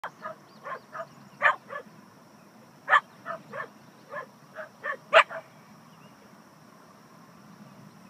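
Dogs barking in a rapid series of about fourteen short barks, some louder than others, which stop about five and a half seconds in.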